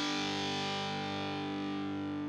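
Intro music: a distorted electric guitar chord left ringing, slowly fading.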